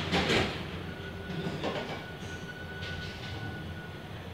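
OTIS traction elevator car travelling up, a steady low hum with a thin high whine through the middle. A short loud rustle of noise comes just after the start, with a couple of fainter ones later.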